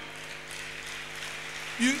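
A pause in speech filled with a steady background hiss and a low, even hum; a man's voice starts up near the end.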